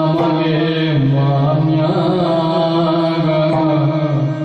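Yakshagana bhagavata singing in long, held, wavering notes in a chant-like style.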